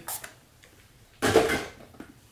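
Pump spray bottle of hair shine spray spritzed onto the hair: one sharp hiss a little over a second in, after a fainter one near the start.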